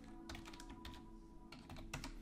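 Faint typing on a computer keyboard: scattered key clicks at an uneven pace.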